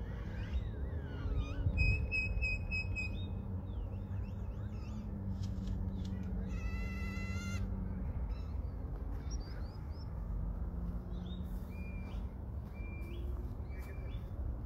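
Birds calling outdoors: scattered short chirps and gliding whistles throughout, a held whistle-like note about two seconds in, and a harsher call lasting about a second near the middle. A steady low rumble of open-air background runs underneath.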